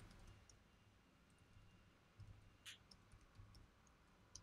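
Faint computer keyboard typing: a few scattered key clicks over near silence.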